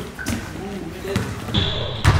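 Basketball bouncing on a hardwood gym court, a few separate thuds, with voices echoing in the gym.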